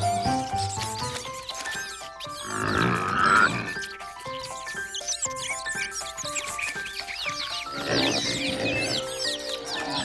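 Cartoon background music with a light, stepping melody, with high chirping peeps from cartoon chicks now and then. Near the end there is a quick run of squeaky animal calls.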